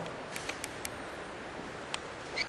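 A few light, sharp clicks over a steady background hiss: three close together in the first second and one more near the end.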